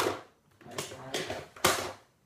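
Hand tools being rummaged through: about four sharp clattering knocks of metal and hard objects in under two seconds, the loudest at the start and near the end.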